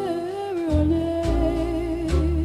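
Music: a female jazz vocalist holds one long sung note, its vibrato widening near the end, over a backing band with low bass notes.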